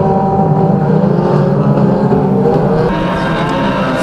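Several banger racing cars' engines running and revving at once, a dense, steady mix of engine notes.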